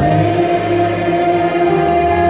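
Church orchestra of violins and keyboard playing a worship song, with many voices singing along in long held notes.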